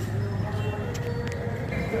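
Outdoor background noise of vehicle traffic with people's voices, with a few short clicks around the middle.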